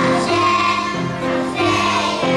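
A children's choir singing a song together over instrumental accompaniment, the melody moving in held notes about twice a second.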